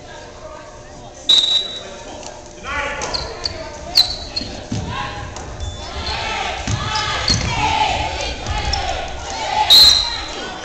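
Basketball game sounds on a gym's hardwood court: sharp sneaker squeaks a few times and the ball bouncing. Spectators and players shout, and it all echoes in the large hall.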